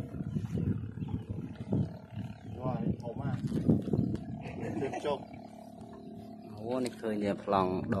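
Drawn-out human voices calling out in wavering tones, loudest near the end, over a low rumbling background.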